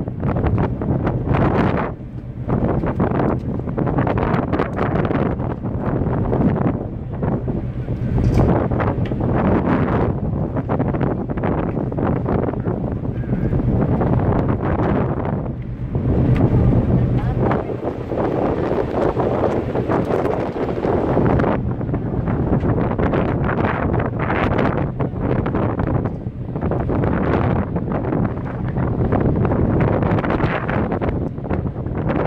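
Wind buffeting the microphone in uneven gusts, over a steady low drone.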